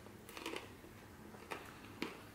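Faint sounds of a person chewing a bite of a cranberry trail-mix snack bar, with a few soft crunches about half a second and a second and a half in.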